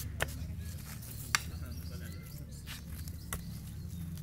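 Iron garden hoe chopping into soil: three sharp strikes, the second, about a third of the way in, the loudest, over a steady low rumble.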